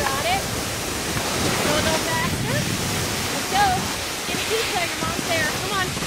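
A steady rushing noise with distant voices calling out in short snatches now and then, none of them close or clear enough to make out words.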